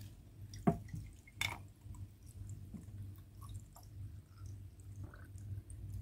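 Tepache being poured from a jug into a glass of ice cubes: faint liquid trickling and splashing over the ice, with two sharp ticks in the first second and a half and scattered small crackles after.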